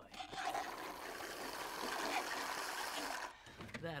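Rapid, continuous slurping of iced coffee drinks through straws, lasting about three seconds and stopping suddenly.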